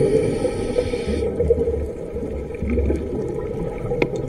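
Underwater sound of a scuba diver's regulator heard through a camera housing: a hiss of inhaled air that stops about a second in, then low, muffled bubbling and rumbling.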